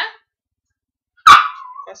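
A pet dog barks once, loud and sudden, about a second and a quarter in, the bark trailing off in a brief whine.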